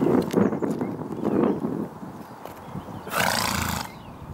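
A short, loud breathy sound from the pony, under a second long, about three seconds in, over a low uneven rumble.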